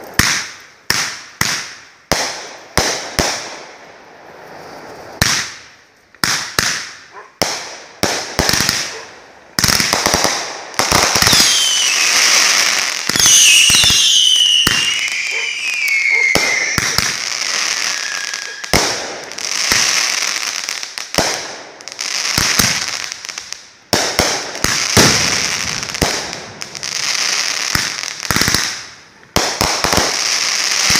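Three Stinger American Soldier 25-shot 500-gram fireworks cakes firing together. A quick run of sharp bangs fills the first ten seconds. Then comes a dense unbroken stretch with several whistles falling in pitch, and separate bangs again near the end.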